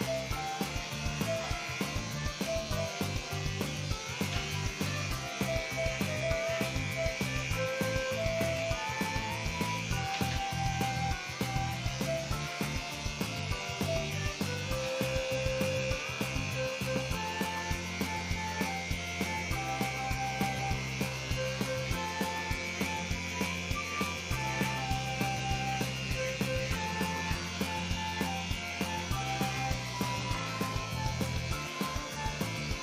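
Electric pet clippers buzzing steadily as they shave through a matted coat, under background music with a melody and a repeating bass line.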